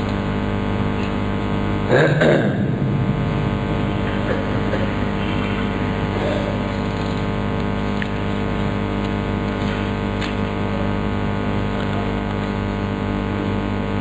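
A steady, droning hum made of several fixed low tones, with a brief louder sound about two seconds in.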